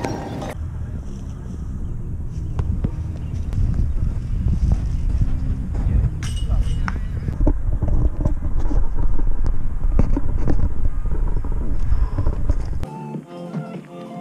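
Wind buffeting a phone microphone outdoors: a heavy low rumble with a few faint clicks, cutting off abruptly near the end.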